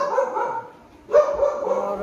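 Pet dog calling twice, each drawn-out bark lasting about a second, the second starting about a second in.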